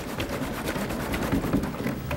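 Liquid nitrogen boiling off in warm water inside a plastic water-cooler jug that is being shaken. A steady rushing noise goes on as the vapour cloud pours out of the jug's neck.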